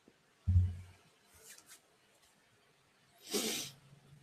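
A low thump about half a second in, as a whisky glass is set down on a desk, then a man's short, sharp breath out near the end after swallowing a sip of whisky.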